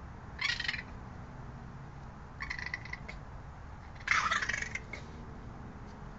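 Raccoon chittering in three short raspy bursts, the loudest about four seconds in.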